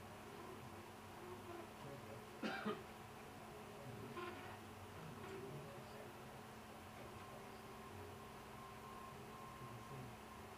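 Vector 3 3D printer running faintly while printing, with a steady low background and a thin steady tone that comes and goes from about seven seconds in. Two short, sharp, louder sounds stand out about two and a half seconds in.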